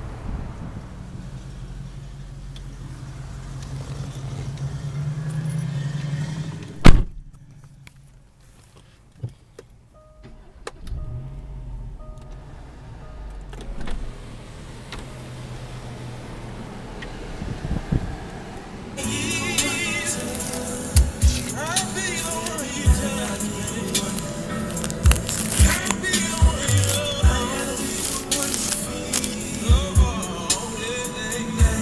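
Wind on the microphone and a low vehicle rumble, then one loud knock about seven seconds in as a car door shuts, after which it goes quiet. Music with a beat starts about two-thirds of the way through and plays on, with handling thumps.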